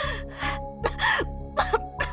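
A woman's voice giving a run of short, strained gasps and groans, four or five in quick succession, over background music with sustained low notes.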